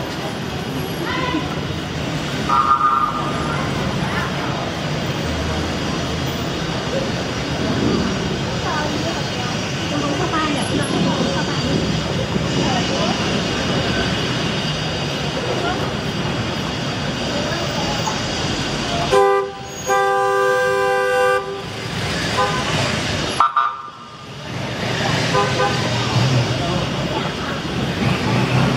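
Busy street traffic with slow-moving cars and people talking nearby; car horns sound, a short toot a few seconds in and one long horn blast of about two seconds about two-thirds of the way through, followed by a brief toot.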